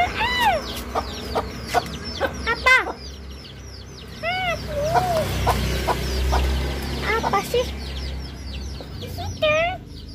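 Chickens clucking, with short arched calls again and again, and small birds chirping high and fast over them. A low rumble swells in the middle.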